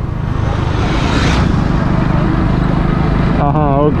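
A two-wheeler's engine running at a steady cruising speed, heard with wind and road noise on the microphone; a brief louder rush comes about a second in.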